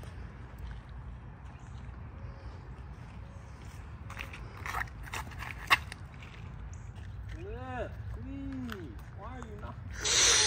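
A disc golf drive thrown from a concrete tee pad: light steps and a single sharp snap a little before the six-second mark as the disc is ripped from the hand, over a steady low outdoor rumble. Near the end come a few short calls that rise and fall in pitch.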